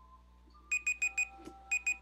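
Digital alarm-clock beeping: two quick groups of four short, high-pitched beeps about a second apart, beginning a little under a second in, sounding as the countdown to the show reaches zero.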